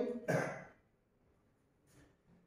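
A man clearing his throat, one short rasp of about half a second.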